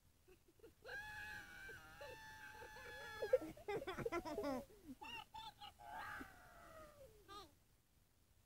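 A child's voice, made high and squeaky by a phone app's voice effect, played back through the phone's speaker. It gives a long held, wavering squeal, then falling cries and a string of short yelps near the end, with no words.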